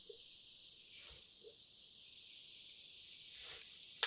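Near silence, with a faint steady high hiss: the fizzing of hot piranha solution (sulfuric acid and hydrogen peroxide) bubbling around a chicken drumstick lowered into it.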